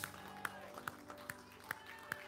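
Scattered, irregular hand claps from a few people in a small congregation, over a faint, sustained keyboard chord.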